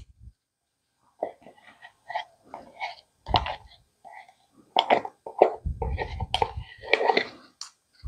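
A spatula scraping thick sour cream out of a plastic tub and dropping it in soft, wet dollops into a bowl of flour. It is a string of short, irregular scrapes and plops starting about a second in, with duller knocks in the second half.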